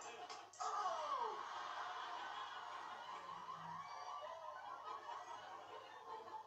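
Sitcom studio audience laughing, heard through a television's speaker, with one voice sliding down in pitch about a second in.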